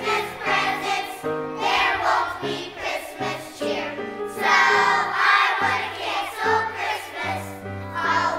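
Children's choir singing with instrumental accompaniment, a steady line of low notes beneath the voices.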